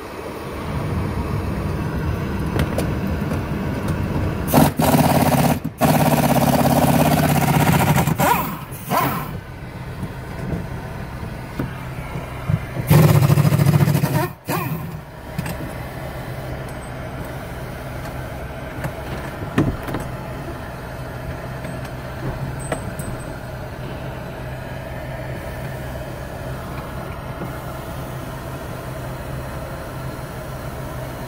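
Inside the cab of a 2015 Ford F-150, its 3.5-litre V6 engine running. There are two louder surges of a few seconds each, about four and thirteen seconds in, and a steady running sound after them.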